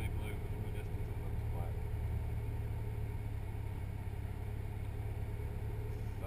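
Subaru's naturally aspirated flat-four engine idling steadily, heard as a low hum inside the cabin while the car sits stationary.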